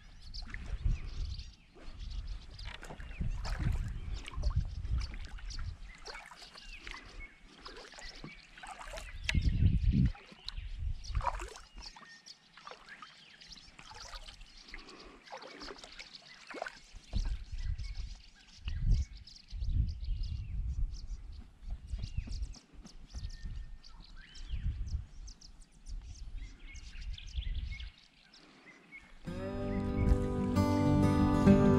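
Kayak paddling on calm water: paddle strokes dipping and dripping, with irregular gusts of wind buffeting the microphone and birds calling now and then. Music comes in near the end.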